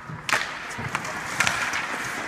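Ice hockey sticks clacking against each other and the ice at a faceoff: one sharp clack about a quarter second in, the loudest, then a few lighter knocks, over skate blades scraping on the ice.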